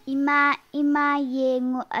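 A child singing a children's song with no instrument behind it: a short opening phrase, then a longer phrase on long held notes.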